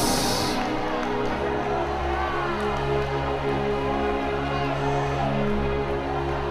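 Electronic keyboard playing slow sustained chords, with a deep bass note coming in about a second in. A short burst of hiss sounds right at the start.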